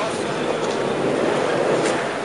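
Steady rumble of a boat's engine and the wash of water, heard from on board while moving along the canal.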